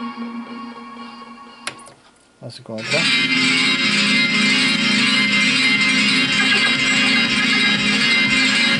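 Music played from CD through home-theater speakers: one track fades away with a click and a brief near-silent gap, then a new guitar-led track starts about three seconds in and plays on at a steady level.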